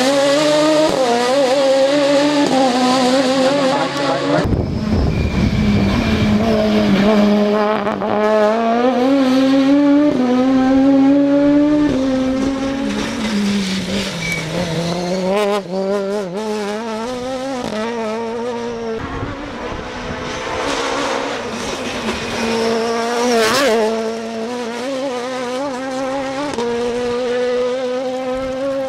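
High-revving Toyota Starlet rally car engine, built to rev to 10,000 rpm, driven hard through a run of passes. Its pitch climbs steadily in each gear, drops in a sharp step at each upshift, and falls away between the bursts of acceleration.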